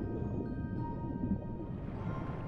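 Muffled underwater ambience: a steady low rumble of deep water, with soft music box notes ringing on above it.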